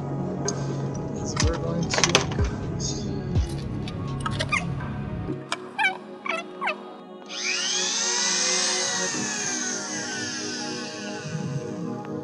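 A handheld rotary tool switched on about seven seconds in and run for about three seconds, its whine wavering and falling in pitch. Before it, scattered clicks and knocks from handling the tool and its case, over background music.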